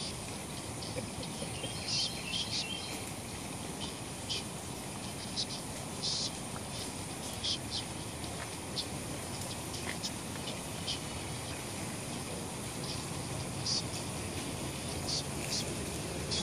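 Outdoor ambience: a steady high hiss with short bird chirps scattered every second or two.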